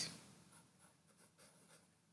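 Near silence: quiet room tone with a few faint, short scratches and ticks in the middle.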